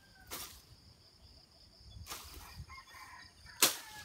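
Leaves and grass brushing and swishing against the body and camera while walking through dense undergrowth: three short swishes, the last and loudest near the end.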